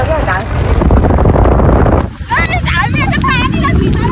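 Loud, steady rushing of a moving vehicle with wind on the microphone. It dips briefly about halfway, after which several high-pitched voices call out with wavering, sliding pitch.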